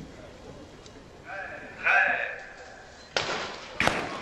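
A hushed stadium crowd before a sprint start, with a short voice-like call in the middle. The starting gun cracks suddenly about three seconds in, with a second sharp crack just after.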